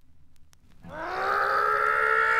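Gap between tracks on a vinyl record, near silent with a few faint surface clicks. About a second in, a long held note swells in with a slight upward slide and then sustains steadily as the next punk track begins.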